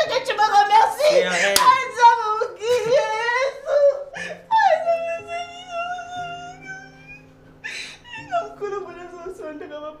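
A woman whining and whimpering without words, with one long, high, held whine about five seconds in, over soft background music.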